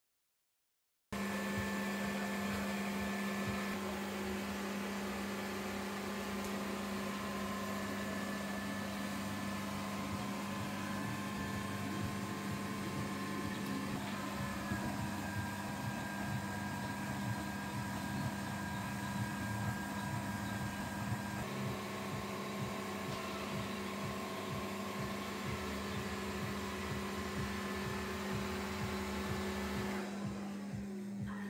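Electromagnetic ballasts of vintage SCAE pedestrian traffic-light lanterns humming on mains power while the lamps are lit: a steady buzzing hum that starts abruptly about a second in.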